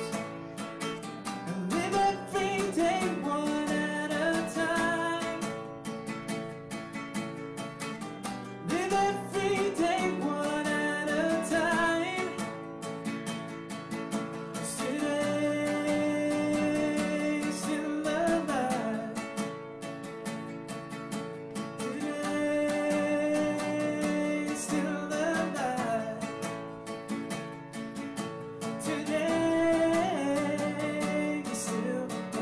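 A man singing to his own strummed acoustic guitar, holding two long notes in the middle of the passage.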